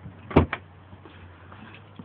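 Two sharp knocks in quick succession about a third of a second in, the first much louder, over a faint steady low hum.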